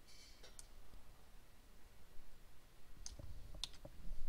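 Faint clicks of a computer mouse and keyboard: one click about half a second in, then a quick cluster of three or four clicks near the end.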